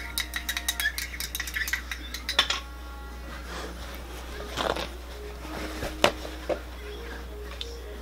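A stirring rod clinking rapidly against the inside of a small cup while lotion is stirred into distilled water, followed by a few separate knocks as the cup and rod are set down on a glass tabletop.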